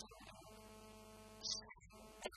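A faint, steady hum, with a short hissing burst about one and a half seconds in.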